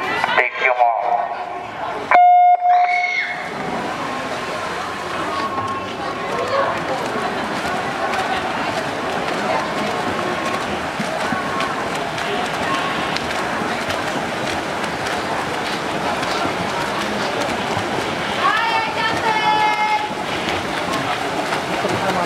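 Electronic start signal for a swimming race: a short hush, then one loud, steady beep lasting about a second, about two seconds in. After it, a steady din of spectators' voices and the splashing of swimmers doing freestyle.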